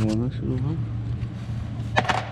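A man's brief voiced sounds over a steady low hum, ending in a single sharp click.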